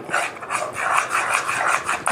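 Steel spoon scraping and stirring foamy dalgona candy mixture of melted sugar and baking soda around a nonstick frying pan, in quick repeated rasping strokes.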